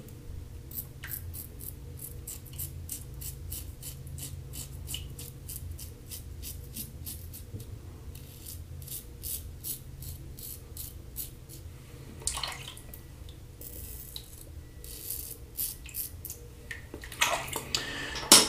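Standard aluminum safety razor with a Kai double-edge blade scraping through lathered stubble in runs of short, quick strokes with brief pauses, a loud crackle of hair being cut.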